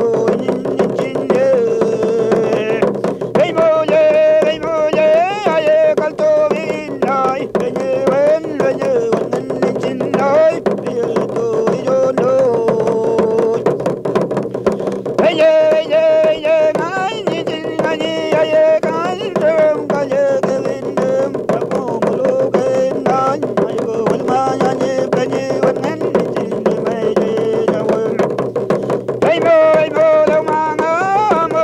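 Mapuche ül kantun: a single voice singing in long phrases with a wavering pitch, over the steady beat of a kultrung, the Mapuche ceremonial hand drum.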